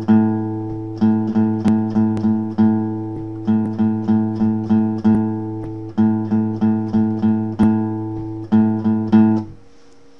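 A guitar strikes one chord over and over in a six-attack eighth-note rhythm (da ba boa, ba da ba). The phrase repeats about four times, then the playing stops near the end.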